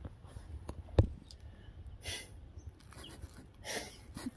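A man's held-back laughter: two short breathy bursts through the nose, about two seconds in and again near the end, with a single sharp tap about a second in.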